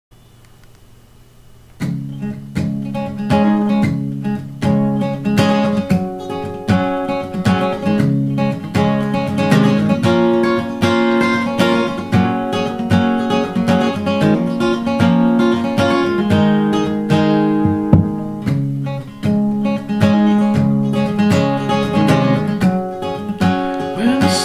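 Steel-string dreadnought acoustic guitar played solo with a capo on the neck, a picked chord pattern starting about two seconds in.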